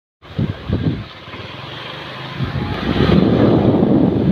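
Wind buffeting the phone microphone over the running noise of a moving vehicle, a rough rumble that grows louder about halfway through.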